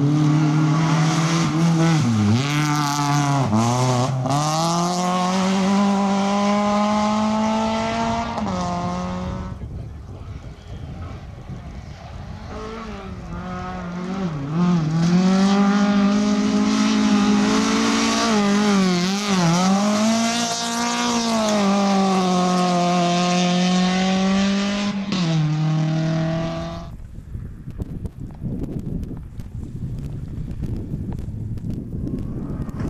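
Two small rally hatchbacks passing one after the other on a gravel stage, each engine revving hard, its pitch dipping sharply and climbing again several times as the driver lifts off and goes back on the throttle through the corner. Each car's sound cuts off suddenly, the first about a third of the way in and the second near the end, leaving quieter outdoor noise.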